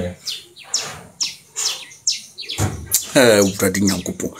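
A small bird chirping over and over, short high chirps a few times a second. A man's voice comes in about two and a half seconds in.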